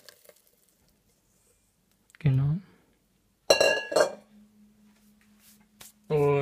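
A small stainless steel mixing bowl set down on a stone countertop: one sharp metallic clank with a brief ringing, about three and a half seconds in. A short vocal sound comes a little over two seconds in.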